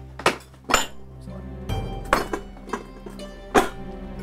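Dishes and glasses clinking on a hotel serving tray as it is carried and set down: several sharp clinks over soft background music.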